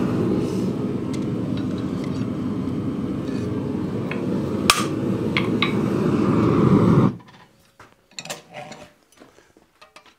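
A forge running with a steady low rushing noise that cuts off suddenly about seven seconds in. About halfway through there is one sharp metallic clink of hot steel bar and tongs on the anvil, with a few lighter clinks near the end.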